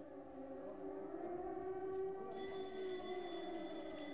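Air-raid sirens wailing in the distance, several overlapping tones slowly rising and falling, sounding an air raid. A thin higher steady whine joins a little past halfway.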